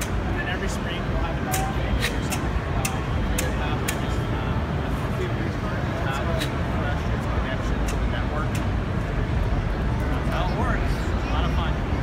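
Busy indoor hall ambience: a steady low rumble with distant, indistinct voices, and scattered sharp clicks throughout.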